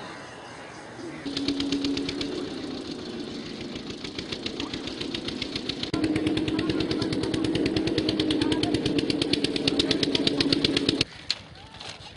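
A small engine running steadily with a rapid, even knock of roughly a dozen beats a second. It gets louder about six seconds in and cuts off suddenly near the end.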